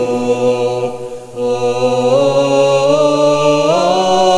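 Vocal chant of long held notes, the pitch stepping up and down between notes, with a brief lull about a second in.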